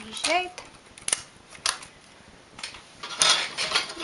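Metal clicking of a multi-prong transfer tool against the steel latch needles of a knitting machine's needle bed: a few single clicks, then a denser clatter near the end.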